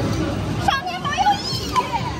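A child's high voice calling out in short bursts over background crowd babble, starting just under a second in.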